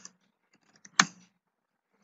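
Computer keyboard keystrokes as a command is typed: a few faint taps and one sharp, loud keystroke about a second in.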